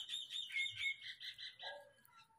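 A bird chirping in a quick run of short, pitched notes, about five a second, fading away over nearly two seconds.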